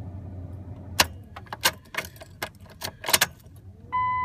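A key ring jangling and clicking at the truck's ignition switch: a sharp click about a second in, then a run of small clicks and rattles.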